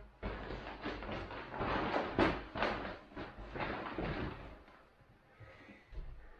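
Rustling as a foam sleeping mat and plastic bags are handled, in irregular bursts for about four seconds before it quietens.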